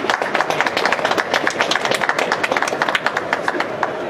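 Applause from a small group, individual hand claps distinct, dying away near the end.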